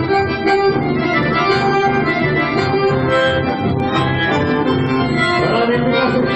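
Chamamé played live on accordion and bandoneón over an electric bass, an instrumental passage with no singing. The reeds carry held and moving melody lines over a steady bass pulse.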